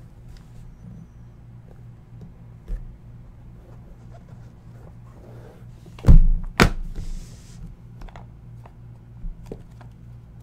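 Hands working a black hard-shell Flawless Football card case, which will not open: faint clicks and small knocks throughout, and two louder thunks about six seconds in, half a second apart. A steady low hum sits underneath.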